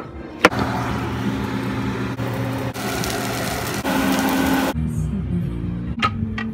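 Two quick chef's knife strokes chopping mushrooms on a wooden cutting board, then a loud steady rushing noise with music for about four seconds, which drops away near the end.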